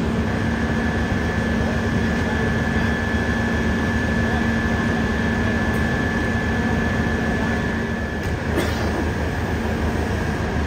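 Steady drone of a parked fire truck's diesel engine running, a low hum and a higher whine held steady; the low hum drops away about eight seconds in.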